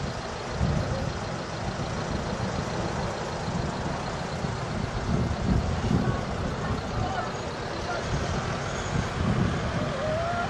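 Traffic noise from vehicles held in a jam: a steady rumble of car and lorry engines running, with faint voices.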